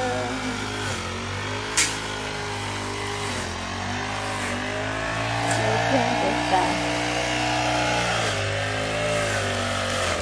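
Petrol backpack brush cutter running at high speed while cutting grass, its engine note dipping briefly a couple of times as the throttle eases. A few sharp clicks sound over it.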